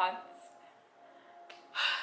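A woman's sharp, audible intake of breath near the end, after a short pause in her speech.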